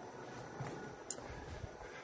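Quiet workshop background with a few faint clicks and knocks, the handling and footstep noise of someone walking across a concrete floor carrying a length of steel.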